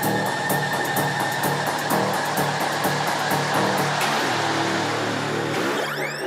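Electronic dance music played in a DJ mix: a steady hi-hat pattern over a low bassline, which drops out about four seconds in for a rushing noise swell, with a rising sweep near the end, as in a build-up.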